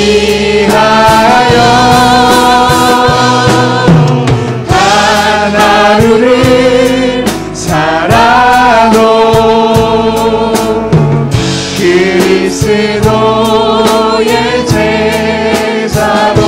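Worship team singing a Korean praise song with instrumental backing, a male lead voice holding long notes with vibrato over group vocals.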